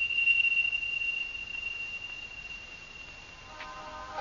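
A single high, steady electronic tone that fades away over about three seconds, then a soft chord of sustained electronic tones comes in near the end, a soundtrack effect for an animated sequence.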